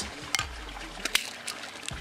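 Small metallic clicks of airgun pellets and their metal tin being handled, two of them sharper than the rest, over a steady faint trickle of water.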